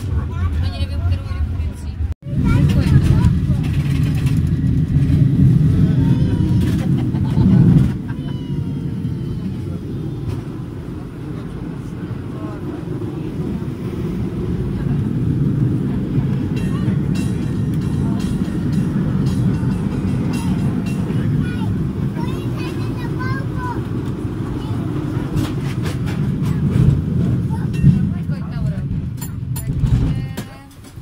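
San Francisco cable car running along its track, heard from inside the car: a loud, steady low rumble that cuts out briefly about two seconds in and eases off a little after about eight seconds.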